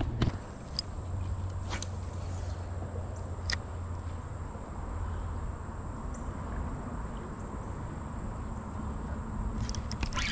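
Quiet outdoor ambience: a steady low rumble with a few faint clicks about one, two and three and a half seconds in, and a thin steady high tone.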